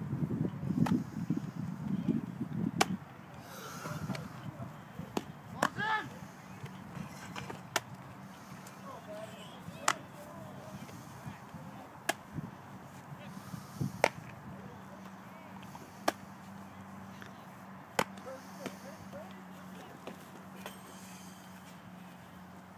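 A baseball smacking into a leather glove during a game of catch: about eight sharp pops, roughly two seconds apart. A low rumble fills the first three seconds.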